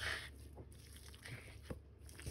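Faint wet squishing of a hand kneading thin slices of raw pork on a plate, with a couple of soft clicks.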